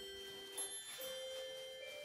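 Soft background music of held, bell-like notes, moving to a new note about halfway through.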